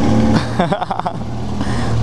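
Motorcycle with an open, muffler-less exhaust running at low speed, its steady engine note echoing in an underground car park. A brief voice comes in about half a second in.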